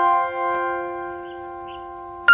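Background piano music: a chord struck just before, held and slowly dying away.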